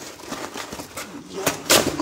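Paper mailer packaging being torn and crumpled by hand in short rasping rips, the loudest near the end.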